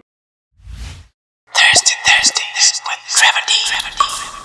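Logo sting sound effect: a short low whoosh about half a second in, then from about a second and a half a dense, bright, whispery rush of sound design.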